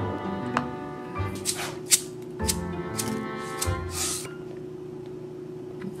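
Background music with held instrumental tones, over which come about six short, sharp shakes from a seasoning shaker between about one and a half and four seconds in, as sesame seeds are sprinkled over food.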